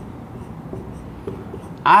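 Marker pen writing on a whiteboard: faint scratching strokes as a structure is drawn. A man's voice starts just before the end.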